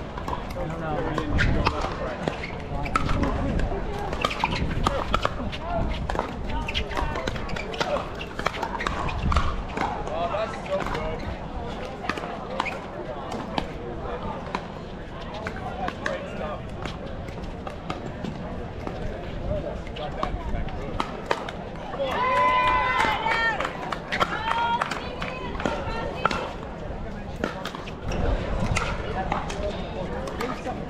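Pickleball play: paddles striking the hard plastic ball in sharp pops, with ball bounces on the court, over the chatter of players and spectators. A loud voice calls out about two-thirds of the way through.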